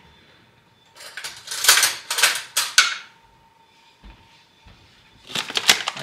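A bag of sugar rustling as it is opened and handled, with light clinks of a measuring spoon, in two stretches: about a second in and again near the end. A soft thump comes about four seconds in.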